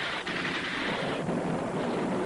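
A steady rushing, thunder-like roar with no distinct blasts.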